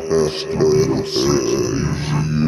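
A slowed-down, pitched-down male voice speaking in a deep, drawn-out drawl, the chopped-and-screwed treatment of a DJ outro drop.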